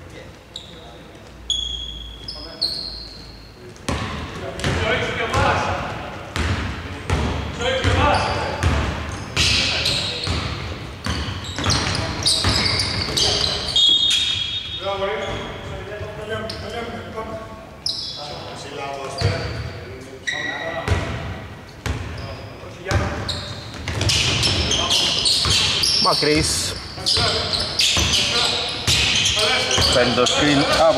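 A basketball bouncing on a hardwood court, with sneakers squeaking and players calling out, all echoing in a large, mostly empty arena. The dribbling and footwork get busier in the last few seconds.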